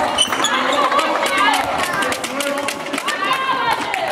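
Handball players calling and shouting to each other in a sports hall, over the knocks of the ball bouncing and of feet on the hall floor.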